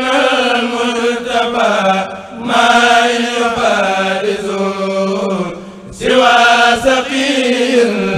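Arabic religious chant, a Mouride khassida, sung in long drawn-out phrases with two short breaks, over a steady low held note.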